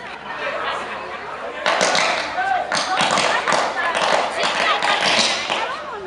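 Electrical arcing from shorting overhead power cables on a utility pole: a loud, dense crackling and sizzling that flares suddenly about two seconds in and keeps going, easing near the end.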